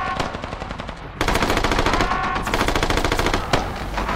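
Rapid automatic gunfire, sustained and continuous, growing heavier from about a second in.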